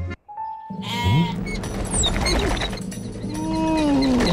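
A cartoon sheep's voiced bleats over background music: a rising call about a second in and a longer call near the end that rises and falls. There is a brief silence at the very start before the music comes back in.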